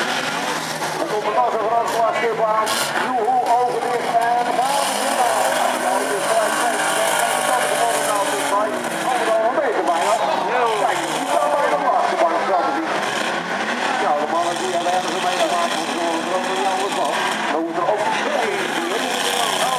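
Several banger racing cars' engines running and revving together, many overlapping engine notes rising and falling, with a few sharp knocks and crowd voices mixed in.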